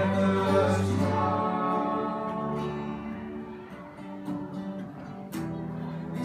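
Acoustic folk ensemble playing: two strummed acoustic guitars with violin and cello. A held note dies away in the first second and a half, the playing softens in the middle and picks up again near the end.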